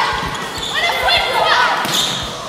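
Indoor volleyball rally in a reverberant gym: players calling out and sneakers squeaking on the hardwood court, with low thuds of footwork. A sharp smack of the ball at the net comes just before the end.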